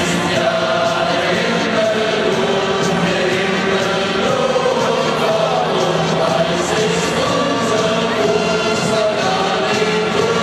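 A large stadium crowd of football supporters singing a song together, many voices holding long notes over the general crowd noise.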